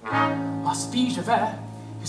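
Musical-theatre pit orchestra comes in suddenly with a held chord, brass over a steady low bass note, and a male voice starts singing over it about a second later.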